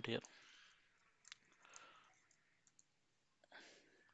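Faint, sparse computer keyboard keystrokes, with one sharper click about a second in.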